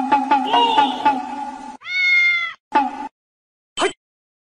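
Domestic cat meowing: one long, loud meow about two seconds in, quickly followed by a shorter one. Before it, a fainter sound with steady pitches and a quick pulse fades out.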